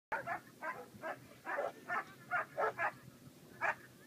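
A German Shepherd barking in a rapid, irregular series of about ten loud barks while held back before being sent on a long bite at the protection helper.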